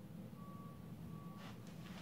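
Two faint, steady high-pitched electronic beeps, the first about half a second long and the second shorter, over a low steady hum. A soft swish of movement comes near the end.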